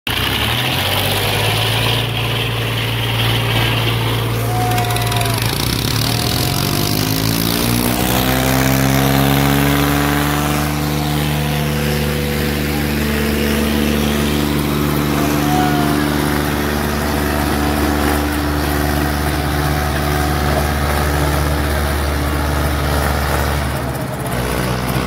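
Diesel tractor engines running hard in a chained tractor tug-of-war. About eight seconds in, the engine revs up and holds a higher, steady note as the tractors pull against each other.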